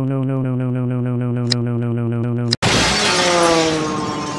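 Cartoon sound effects: a steady droning electronic tone that cuts off about two and a half seconds in with a loud shattering crash, followed by ringing tones that slide down in pitch and fade.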